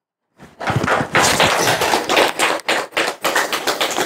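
An audience clapping hands, starting about half a second in as a dense run of many overlapping claps.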